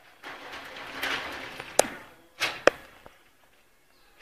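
Gunfire: several sharp shots in the second half, each trailing off in an echo, after a rushing swell of noise.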